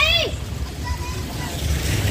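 Steady low rumble of street noise on a wet road, with a short burst of a woman's voice at the very start and a slight swell of hiss near the end.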